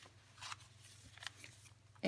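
Faint rustle of paper pages and a card flap being turned and brushed by hand in a handmade paper journal, with two soft swishes, about half a second in and again just after a second.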